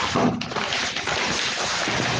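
A loud, steady rushing noise on a microphone, like wind blowing across it, with a faint low hum underneath.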